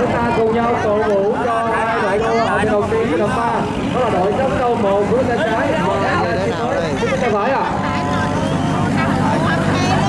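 Continuous human voices talking and calling over one another, with a steady low hum underneath.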